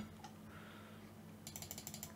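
A quick run of small, faint clicks about one and a half seconds in: a computer keyboard's left arrow key tapped several times in a row.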